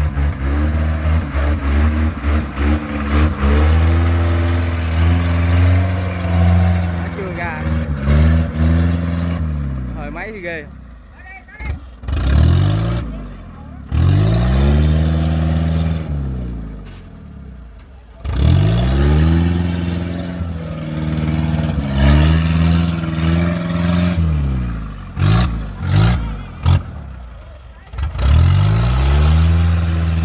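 Engine of a tracked rice carrier loaded with rice bags, revving up and down again and again as it churns through deep mud. The pitch rises and falls every few seconds, with two short quieter spells midway.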